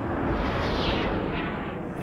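A long rushing roar from a combat soundtrack, swelling about half a second in and slowly fading, without pitch or speech.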